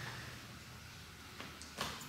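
Quiet room tone in a pause between phrases of a man's speech, with two faint short clicks in the second half.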